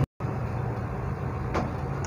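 Steady background hum and hiss of the recording, broken by a brief cut to total silence at the very start, with one faint click about one and a half seconds in.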